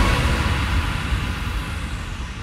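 A white-noise sweep in a future bass track: the beat has just cut out, and a wash of noise fades away, growing darker as its highs roll off.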